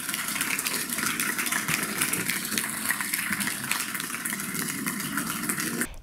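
Audience applauding: steady, dense clapping from a seated crowd, cut off abruptly just before the end.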